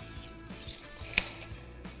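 Soft background music, with a tape measure's blade retracting into its case and snapping shut with a sharp click about a second in.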